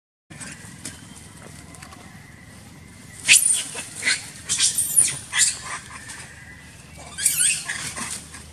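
Macaque monkeys screaming: a run of sharp, high-pitched squeals, each sliding down in pitch, from about three seconds in, then a second short burst near the end.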